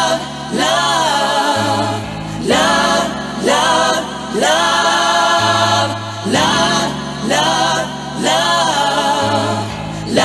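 Vocal house music from a 1990s handbag house DJ mix: sung vocal phrases, each swooping up into its note, over long held bass notes that shift every couple of seconds.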